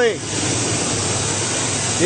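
The 5.3-litre V8 of a 2002 GMC Sierra 1500 idling smoothly, heard up close under the open hood as a steady, even rush.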